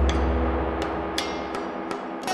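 Dramatic background score: a deep bass drum or timpani hit fading away under held tones, with a few sharp percussive strikes.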